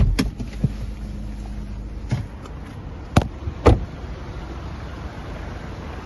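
Someone getting out of a 2015 Audi A3 Sportback: a few sharp clicks and knocks of the door being opened and shut, the loudest two close together about three seconds in. A low steady hum stops about two seconds in.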